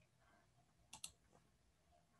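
Near silence: room tone, with a faint short click about a second in.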